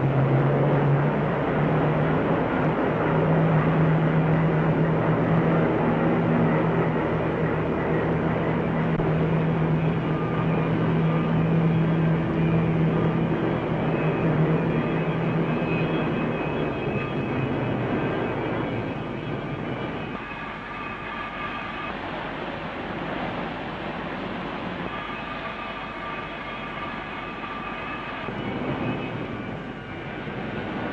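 Steel-mill noise on an old film soundtrack: a dense, steady mechanical roar with a low hum through the first half. High steady tones come in around the middle and again near the end, and the roar eases somewhat about two-thirds of the way through.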